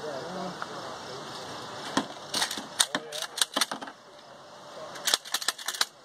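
Metallic clicks and clacks of a rifle action being worked while the rifle is unloaded and cleared, in two bursts of quick clicks about two seconds in and again about five seconds in.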